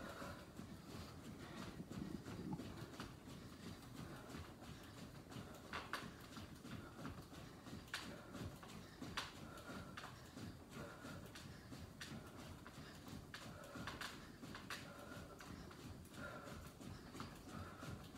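Faint footfalls of sneakers jogging in place on an exercise mat, a soft uneven patter of steps.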